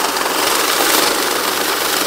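Electric bill counter machine feeding a stack of Bangladeshi taka banknotes through at high speed, a steady fast whirring rustle of paper and rollers as the notes are counted.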